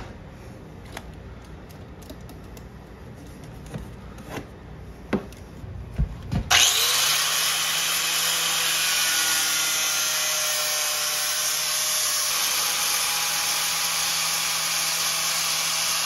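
A few sharp knife clicks and taps on a rigid vinyl plank, then about six seconds in a DeWalt angle grinder with a sanding disc starts and runs steadily, grinding a curve into the end of the plank.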